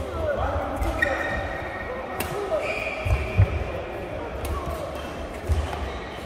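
Badminton doubles rally: a few sharp racket strikes on the shuttlecock, spaced a second or two apart, with low thuds of players' footsteps on the court.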